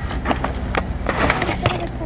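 Metal snake hook scraping and clacking against loose bricks and stones as it is worked into the rubble, a quick, irregular run of sharp knocks.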